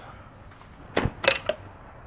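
A few short, sharp plastic clicks and knocks starting about a second in, as the bulb sockets are unplugged and pulled out of the back of a Jeep Wrangler JK's loosened plastic front grille.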